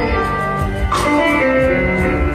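Live blues band playing a slow blues, with electric guitar holding notes over bass and drums.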